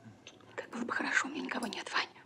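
A breathy, whispered human voice with soft clicks, louder from about half a second in and rising and falling in pitch.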